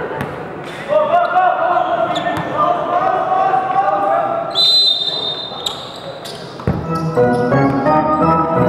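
Basketball game sound in a gym: a ball bouncing with scattered knocks and voices calling. A referee's whistle sounds for about a second just past halfway. Music starts near the end.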